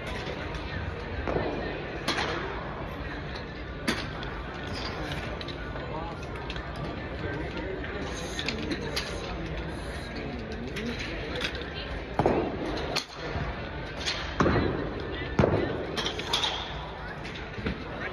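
Golf balls being struck at an indoor driving range: several sharp cracks, each with a short echo from the dome, spread irregularly over a steady background of distant voices.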